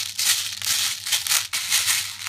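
A hand stirring through a plastic bowl full of small plastic BB pellets, the pellets rattling and clattering against each other and the bowl in uneven surges.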